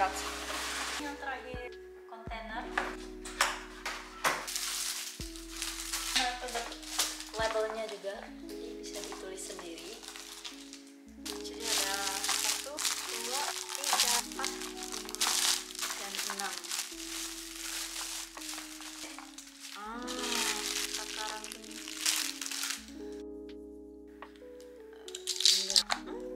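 Background song with held chords, a bass line and a singing voice, over crinkling and crackling of plastic wrapping being handled.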